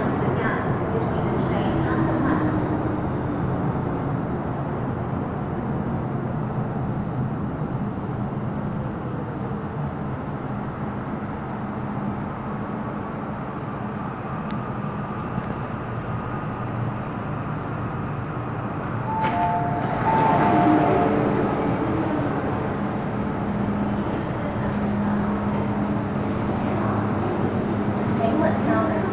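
MTR Island Line M-Train pulling into the station and slowing to a stop beside the platform, with steady running and rolling noise. About twenty seconds in, a two-note chime sounds, a higher note then a lower one, followed by a steady low hum from the stopped train.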